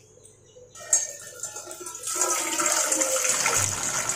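Water pouring from a stainless steel jug into a stainless steel saucepan, beginning about two seconds in and running steadily. A brief knock comes about a second in, before the pour.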